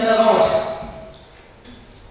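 A man speaking French into a handheld microphone. His speech stops within the first second, leaving a pause of quiet room tone.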